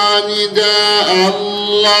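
A man's solo voice chanting a Turkish Islamic hymn into a handheld microphone, drawing out long, ornamented sung notes on the words "Allah".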